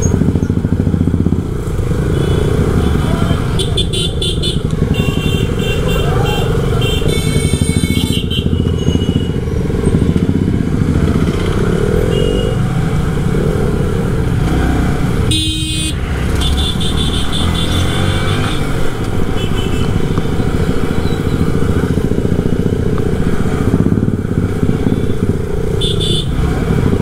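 Motorcycle engine running at low, city-traffic speed among other motorcycles, a steady loud rumble, with repeated horn honks, several in the first nine seconds and more a little past halfway.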